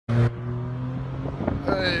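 Muffler-deleted 3.5-liter V6 of a 2013 Ford Explorer, heard from inside the cabin, running at a steady cruising note. A short loud thump sounds at the very start.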